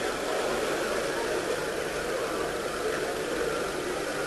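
Steady hiss of background noise from an old recording, with no speech or distinct events.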